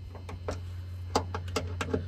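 A socket wrench clicking a few times, irregularly, as it works on the 10 mm bolts of a Tesla frunk latch, over a steady low hum.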